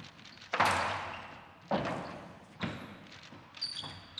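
Squash rally: four sharp cracks of racket and ball on the court walls, about a second apart, each echoing away in the hall, with a brief high squeak of shoes on the court floor near the end.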